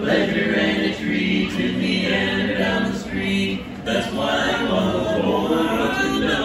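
Men's barbershop quartet singing a cappella in close harmony, holding long chords, with brief breaths between phrases about a second in and again a little past the middle.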